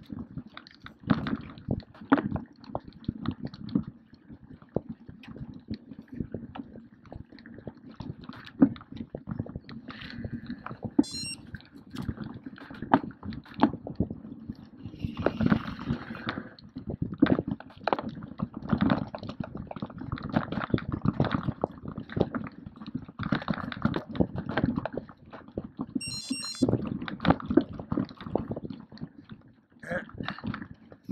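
Mountain bike ridden over a wet, muddy trail: tyres running through wet dirt and mud with a constant, irregular rattling and clattering of the bike over bumps. Two short high beeps come through, about fifteen seconds apart.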